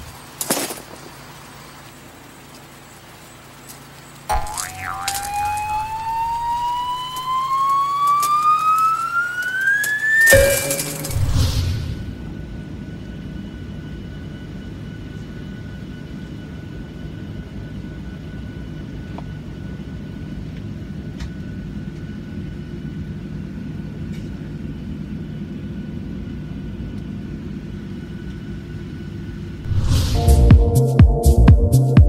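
A whistle-like tone that climbs steadily in pitch for about six seconds and ends in a sudden loud burst. It gives way to the steady, even drone of an airliner cabin in flight, which lasts the second half.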